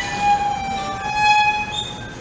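Solo violin, bowed, playing long sustained high notes, one held note giving way to another about a second in.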